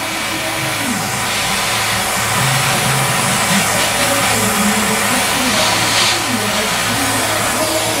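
Handheld gas torch flame hissing steadily against a steel motorcycle fender as a lead stick is melted onto it for lead body filling, with music in the background.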